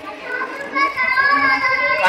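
A child's voice calling out, holding one long high note that starts a little under a second in.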